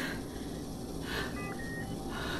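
Faint electronic beeps of a medical patient monitor: a short blip followed by a slightly longer beep in the second half.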